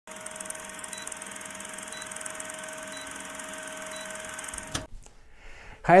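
Film-projector countdown-leader sound effect: a steady projector whir with a short high beep about once a second, ending in a sharp click just before five seconds in. A man's voice starts right at the end.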